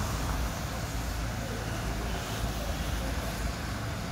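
A van driving past on a wet brick street: steady engine rumble and tyre noise.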